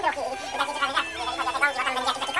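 A high-pitched, warbling voice, with one held note about halfway through.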